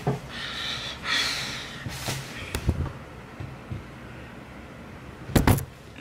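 Handling noise of a camera being adjusted by hand: soft rustling, a few light clicks, then one loud knock near the end as the camera is bumped.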